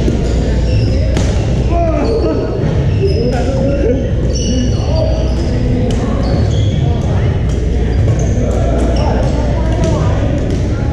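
Busy badminton hall echoing: rackets hitting shuttlecocks on several courts as frequent sharp clicks, sneakers squeaking on the hardwood floor, and players' voices, over a steady low rumble of the large gym.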